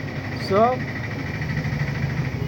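A steady low mechanical hum, like an engine running at idle, with a faint steady high tone, under a single spoken "so".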